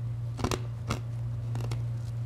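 A few short, sharp clicks and faint rustles from handling at a lectern, over a steady low electrical hum.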